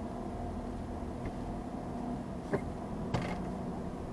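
Steady low hum of a car idling at a standstill, heard inside the cabin through a dash cam's microphone. Two short clicks or creaks stand out, one about two and a half seconds in and another just after three seconds.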